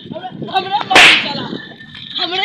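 A single loud whip crack about a second in, from a cord lashed like a whip.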